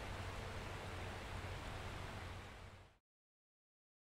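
Faint steady background hiss with a low hum underneath, fading out about three seconds in to dead silence.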